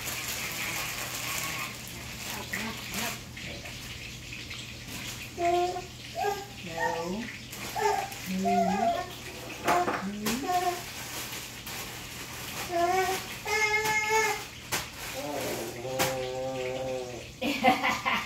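Running water in a kitchen, loudest in the first couple of seconds, with a few sharp clinks of dishes and indistinct voices talking in the background.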